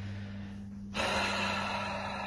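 A person's loud breath close to the microphone starts suddenly about halfway through, over a steady low hum.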